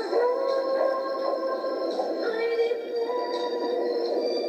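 A voice singing long held notes over backing music, thin-sounding with no bass.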